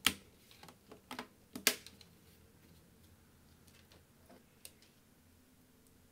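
Bottom cover of a Lenovo IdeaPad S145 laptop being pressed down onto the chassis, snapping into place with a few sharp clicks in the first two seconds and one faint click later.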